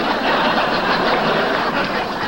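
Studio audience laughing steadily after a punchline.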